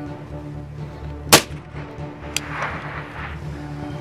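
A single loud, sharp shot from a suppressed AR-style rifle about a third of the way in, followed about a second later by a fainter sharp crack, over background music.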